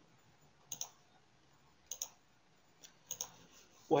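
A few sharp computer mouse clicks, about a second apart, over faint room tone.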